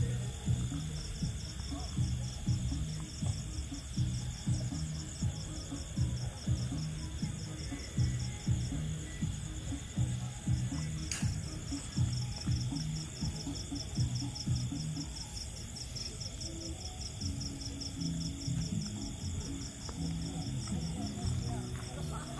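Crickets trilling in a fast, steady pulse, over background music with a low, uneven beat.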